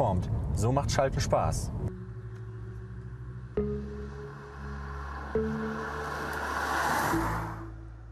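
Peugeot 308 GT hatchback with its 1.6-litre turbo petrol engine driving past, a rising rush of tyre and engine noise that swells and then cuts off shortly before the end, over background music with held chords.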